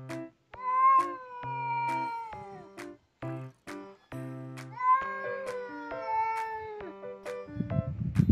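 Two long, drawn-out wailing yowls from an agitated cat squaring off against another cat, each about two seconds and dropping in pitch at the end. It is the excited cry of a cat spoiling for a fight, which sounds like a crying baby.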